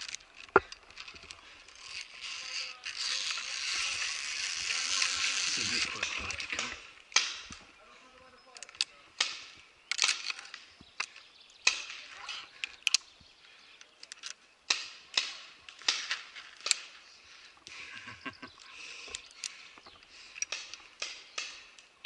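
Steel safety carabiners clicking and clinking against each other and a steel cable again and again, with a steady hiss lasting about four seconds from about two and a half seconds in.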